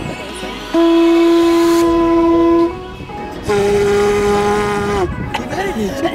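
Conch shell blown as a horn: two long steady blasts, the first about two seconds long and the second about a second and a half and a little higher in pitch, falling off as it ends. Music plays underneath.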